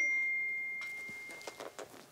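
A single bell-like ding from a mobile phone, ringing out and fading over about a second and a half: an incoming message alert. A few faint taps follow near the end.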